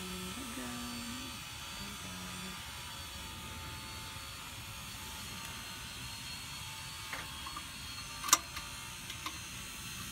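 A few sharp metallic clicks from hand tools on a car's rear disc brake assembly, the loudest about eight seconds in with two small ones after it, over a steady background hum.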